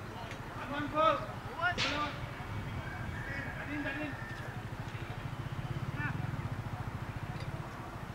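Distant men's voices calling across an open cricket field, with one sharp knock about two seconds in and a low steady hum that swells around the middle.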